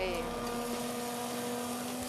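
Hand-held immersion blender running steadily with its blade in a pot of liquid sauce.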